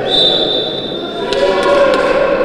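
Indoor wheelchair basketball game: a steady, high referee's whistle for about a second, then a few sharp knocks of a basketball bouncing on the court, over voices echoing in the hall.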